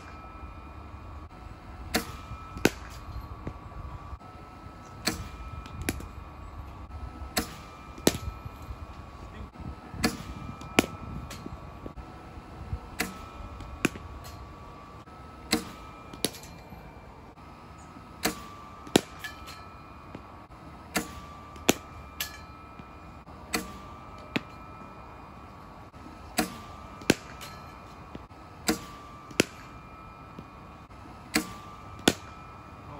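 A cricket bowling machine running with a steady whine, firing a ball about every two and a half to three seconds. Each delivery gives two sharp knocks under a second apart: the ball shot out of the machine, then the bat hitting it.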